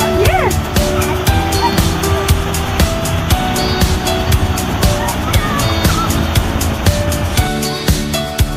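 Background music with a steady beat and sustained notes.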